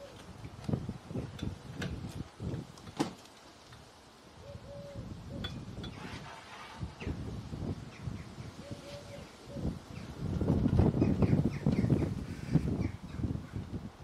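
Knocks and clatter of a wooden board and fittings being handled on a benchtop table saw that is not running, because it has no power, with a louder stretch of rustling and knocking about ten seconds in. A bird gives a short call about every four seconds.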